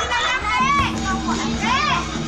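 Excited shouting and laughing of a group of children and adults, with high voices swooping up and down. A steady low hum joins about half a second in.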